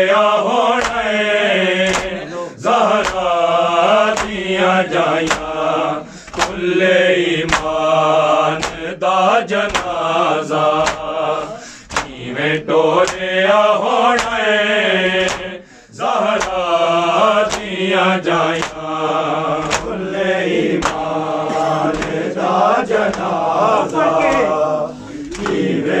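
A crowd of men chanting a Punjabi noha lament in unison, with sharp, steady, rhythmic slaps of hands striking bare chests in matam keeping the beat.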